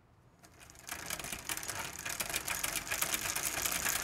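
Rapid, dense mechanical clicking and rattling, like a small machine running. It starts about a second in and slowly grows louder.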